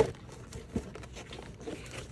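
Cardboard box being opened by hand: a sharp click right at the start, then scattered light rustles and crinkles of the packaging.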